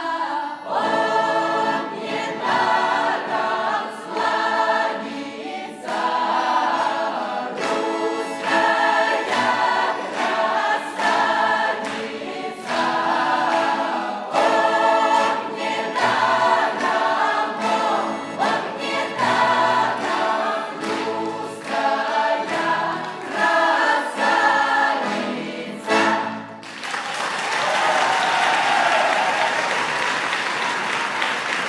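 Mixed-voice youth Russian folk choir singing in full voice, the song ending about 26 seconds in, followed at once by audience applause.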